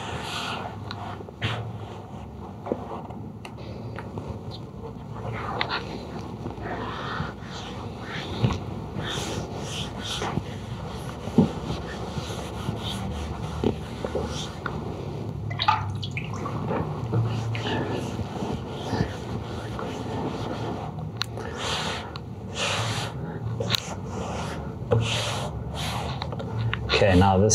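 Hands wiping and smoothing wet watercolour paper on a board, with the damp sheet lifted and laid back down partway through: irregular rubbing, rustling and wet squelching strokes, coming thicker near the end.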